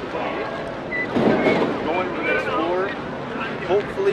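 Voices of people talking in a crowd, with a short low rumble about a second in.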